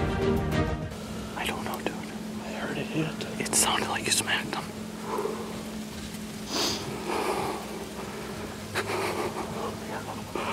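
Background music ending about a second in, then a bowhunter's hushed, excited whispering and breathing as he reacts to a shot buck, over a faint steady hum.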